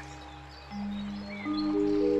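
Background score of held notes. A low note comes in under a second in, and higher notes join from about a second and a half, building a sustained chord.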